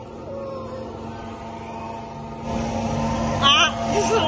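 Bumper boat's motor running with a steady hum. About two and a half seconds in a louder rushing noise joins it, with a brief high squeal near the end.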